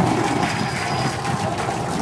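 Super Heavy booster's Raptor engines firing in the landing burn, thirteen engines lit, heard as a steady rushing noise with no distinct tone.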